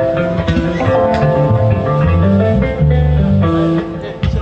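Live band music: an electric bass playing a moving line of low notes under electric guitar, with drum hits.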